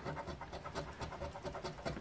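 A coin scratching the coating off a scratch-off lottery ticket: a faint rasping made of quick, repeated short strokes.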